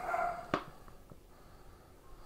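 A dog gives one short, faint bark in the background right at the start, followed about half a second in by a single light click from a plastic blister-packed toy being handled.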